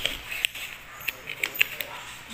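Paper handled close up: a printed manual's pages and a card being bent and flipped by hand, with a series of sharp paper ticks, most of them in the second half.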